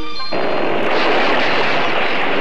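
A short run of music notes gives way, about a third of a second in, to a sudden loud, steady rush of water: a cartoon sound effect of a log dam bursting and flooding.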